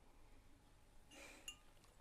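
A stemmed wine glass set down on a table, giving one faint clink with a brief ring about halfway through.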